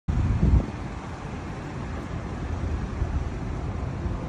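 Car and traffic noise through a dashcam microphone: it cuts in suddenly as a steady low rumble under a hiss, with a brief louder low thump about half a second in.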